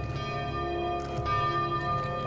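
Church bells tolling for a funeral, about three strikes whose ringing overlaps and hangs on.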